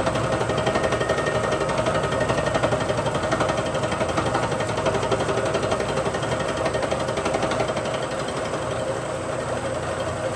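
Bridgeport milling machine running a fly cutter across the cast-iron differential housing of a Dana 60 axle: a steady machine sound with a fast, even rhythmic chatter from the cutter's interrupted cut, easing a little near the end.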